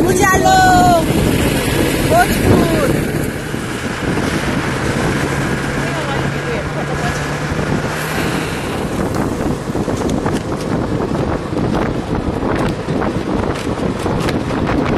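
A vehicle driving along a rough road, its engine and road noise a steady rumble with wind buffeting the microphone; voices are heard briefly at the start.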